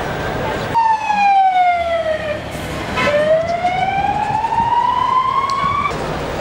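Emergency vehicle siren wailing. It starts about a second in, falls slowly in pitch, breaks off briefly, then rises slowly again.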